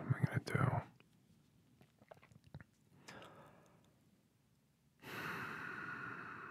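A man's close-miked voice in a whispered ASMR roleplay: a short wordless vocal murmur at the start, a few faint clicks, then a long breathy exhale with a faint pitch starting about five seconds in.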